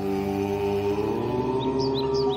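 A long chanted "Om": one voice holding a steady tone with strong overtones, over soft ambient music. Birds chirp near the end.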